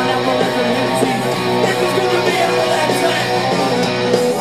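Punk rock band playing live and loud: a distorted electric guitar riff strummed over drums, with no vocals in this stretch.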